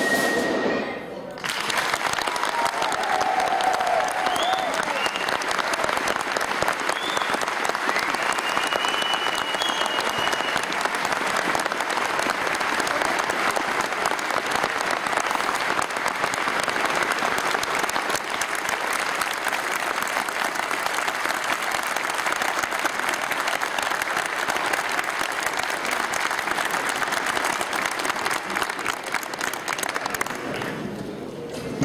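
A large hall audience applauding steadily for about half a minute at the end of a piece for bagpipe and band. A few brief high calls stand out above the clapping in the first ten seconds.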